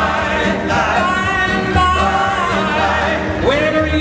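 Southern gospel male quartet singing in close harmony over keyboard and band accompaniment.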